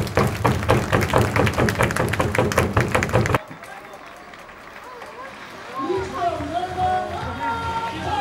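Loud stadium cheer music with a fast, driving beat, cut off suddenly about three and a half seconds in. After a quieter stretch, a voice with long drawn-out syllables comes in about six seconds in.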